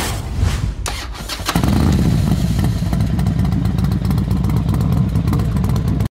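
A whoosh, then a motorcycle engine running with a steady low rumble from about a second and a half in, used as an intro sound effect; it cuts off suddenly at the end.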